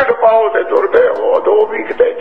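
A man's voice speaking continuously.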